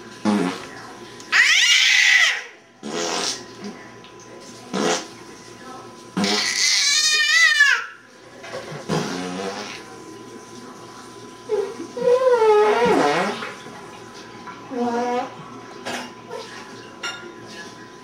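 An infant of almost a year letting out high-pitched, wavering squeals and blowing wet raspberries, in short separate bursts with pauses between; the longest squeal wobbles and slides down in pitch.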